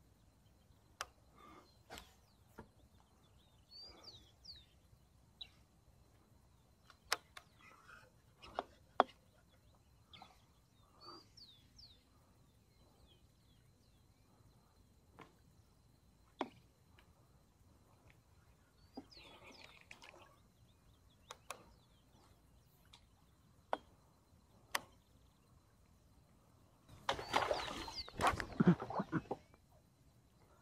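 Scattered bird chirps over a quiet waterside background, with sparse small clicks and knocks from fishing gear being handled in a kayak. Near the end comes a louder burst of rustling noise lasting about two seconds.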